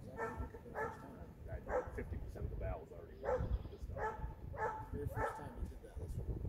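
A dog yipping, about seven short calls in an uneven series.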